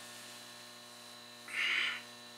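Steady low electrical mains hum in a small room, with a short burst of soft hissing noise about a second and a half in.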